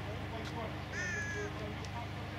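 A bird calls once, a clear pitched call about half a second long, a second in, over a steady low hum.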